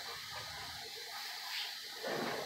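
Quiet room tone, a faint steady hiss, with one brief soft rustle about one and a half seconds in.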